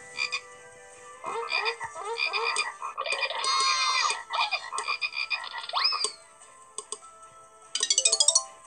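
Cartoon frog croak sound effects from a children's story app, a quick string of croaks over several seconds with a rising whistle-like glide about six seconds in. Near the end a short bright chime sounds as a reward jingle.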